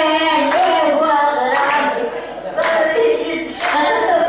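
Singing with hands clapping in time, about one clap a second.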